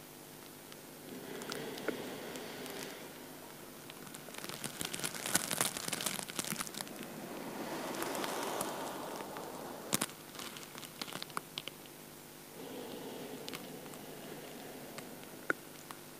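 A person breathing slowly and deeply through the nose, about four long breaths in and out a few seconds apart. The breath is paced to slow neck rolls: in on one half of each circle, out on the other. Light crackling and rustling clicks sound over the breaths, thickest in the middle.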